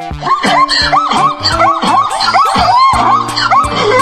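Zebra calling: a rapid run of short, yelping, bark-like calls, about three a second, over children's background music with a steady beat.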